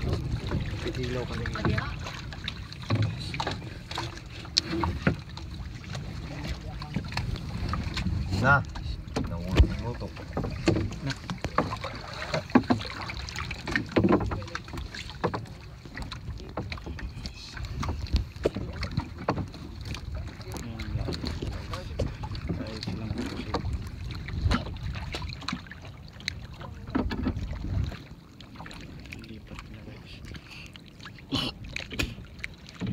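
Wind rumbling on the microphone aboard a small wooden boat, with scattered knocks and clatter as things are handled against the hull.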